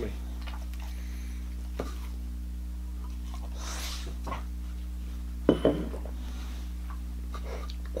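A steady low electrical hum, with a sip of stout from a glass about halfway through and a short voiced sound soon after.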